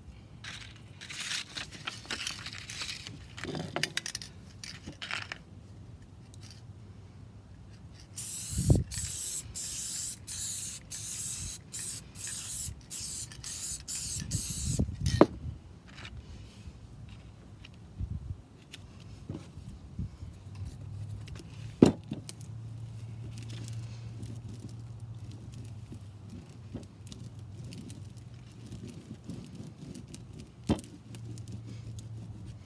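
Aerosol spray adhesive being sprayed onto the back of a sheet of sandpaper: a quick string of short hissing bursts, about two a second, from about eight to fifteen seconds in, with fainter hissing before it. There are also paper-handling scrapes and one sharp knock a little past twenty seconds.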